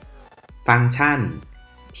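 A man speaking briefly in Thai over faint, steady background music.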